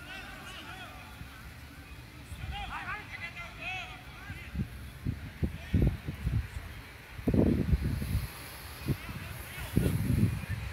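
Distant shouting of footballers calling out during play on an open pitch, mostly in the first second and again around three seconds in. From about five seconds in there are several short, low rumbling bursts on the microphone, the loudest between seven and eight seconds.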